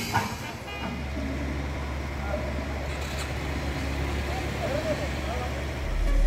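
Murmur of a festival crowd over a steady low hum that sets in just under a second in, like a running engine or motor.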